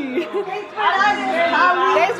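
Indistinct chatter of several people talking in a room.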